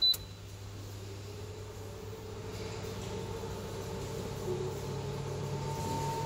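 Air fryer oven giving one short high beep as its start/stop button is pressed, then its convection fan motor starting and running with a steady hum that slowly grows louder as cooking begins.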